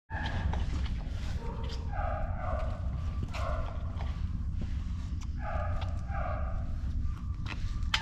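Footsteps of a handler and a Doberman walking side by side across the floor, heard as repeated short scuffs and a few light ticks. A steady low hum runs underneath.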